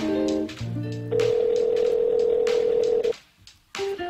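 Background music with plucked guitar notes, then a telephone ringback tone: one steady ring about two seconds long that cuts off suddenly.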